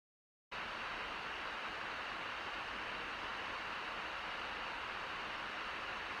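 Steady hiss of a car driving along a street, road and cabin noise, cutting in suddenly about half a second in after dead silence.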